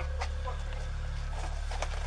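Steady low hum with a few faint ticks and a faint distant voice, between shouted commands.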